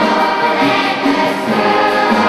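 Large children's choir singing with an orchestra accompanying.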